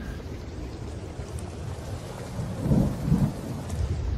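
Steady rain hiss with two low rumbles of thunder a little before three seconds and just after.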